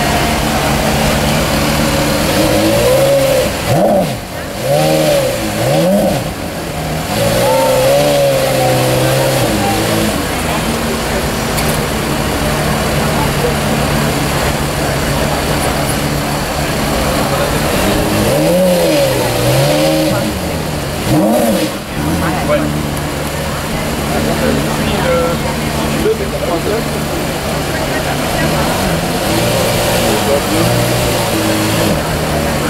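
Porsche Carrera GT's 5.7-litre V10 idling steadily, blipped a handful of times so the pitch shoots up and falls back: one cluster of revs about four seconds in and another around twenty seconds in.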